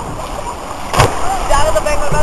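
A person hitting the pool water after a jump from a 3-metre diving tower: one sharp splash about a second in, followed by voices calling out over the noise of an outdoor pool.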